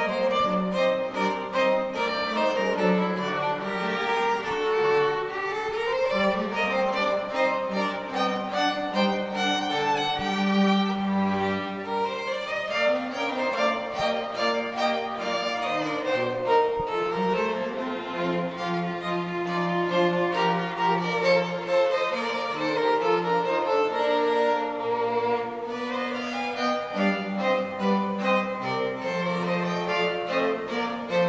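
Seventh-grade string quartet playing live: violins carry a moving melody over long held lower notes.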